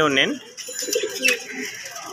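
Domestic pigeons cooing in a cage, a low wavering coo.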